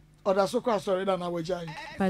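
A person's voice talking, starting about a quarter second in, with long, wavering vowels.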